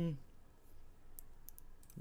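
A few short, faint computer mouse clicks, made while raising the bet in an online slot game's bet menu.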